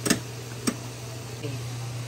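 Two sharp clinks of stainless steel cookware, the first right at the start and a smaller one about half a second later, as the steamer tier and its lid are set on the pot, over a steady low hum.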